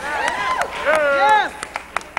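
A voice calling out in long, rising-and-falling tones over a murmuring congregation, loudest about a second in. After that it quietens to a few scattered hand claps near the end.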